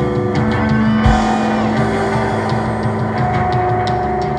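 Live rock band playing an instrumental passage without vocals: sustained electric guitar notes over bass and drums, with a steady tick of cymbals and a low hit about a second in.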